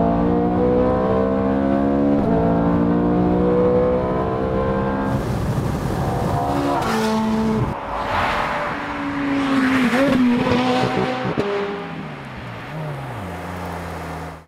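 Ferrari 430 Scuderia's V8 running hard at high revs, heard from inside the cabin, its note climbing steadily with a brief dip about two seconds in. Then the car passes at speed: a rush of wind and tyre noise swells and fades while the engine note drops as it goes by. Near the end a lower engine note falls in steps.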